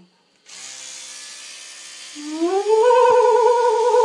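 A steady hiss starts about half a second in. From about two seconds in a person's voice rises into a long hummed note that wobbles quickly in pitch.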